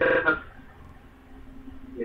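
A man's voice says a short word, then pauses for about a second and a half, leaving only a faint steady background hum.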